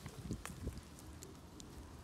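Faint handling noises from hands working a freshly skinned kangaroo carcass and pelt: a few soft clicks and rustles in the first second, then low background.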